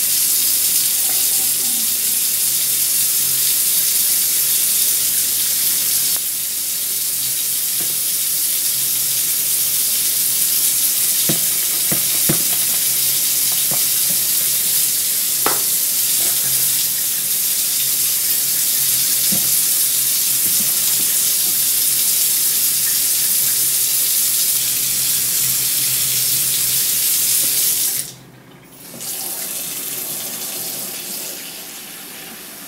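Kitchen faucet running in a steady stream into a plastic tub in a stainless steel sink, filling it with water. A few light knocks come in the middle, and the water stops briefly near the end, then runs again, somewhat quieter.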